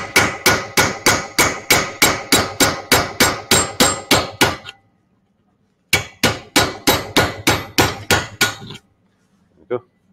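Hammer blows on a flat cold chisel cutting into a steel workpiece clamped in a bench vise, about four strikes a second with a metallic ring. The blows stop just before halfway, then resume for a shorter run that ends near the end.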